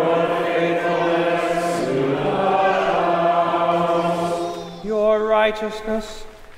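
Liturgical chant sung in long, steady held notes, the pitch stepping down about two seconds in. Near the end the held chord gives way and a single voice begins chanting the next psalm verse.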